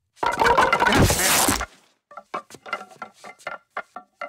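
A loud crash-like noise lasting about a second and a half. It is followed by a cartoon man's quick, short panting breaths, about four a second, as if worn out.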